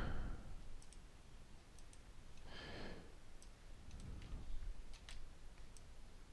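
Computer mouse clicks: several faint, sparse clicks spread a second or so apart, with a soft breath about halfway through.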